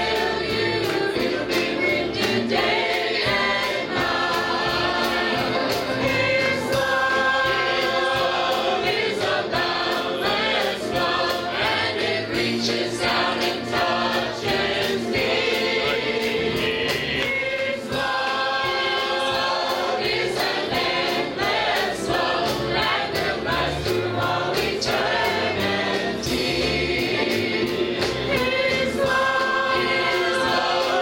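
Mixed church choir of men and women singing a gospel song together.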